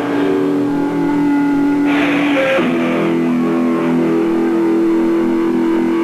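Punk band playing loud distorted electric guitar, with long held chords ringing out and a short crash of noise about two seconds in.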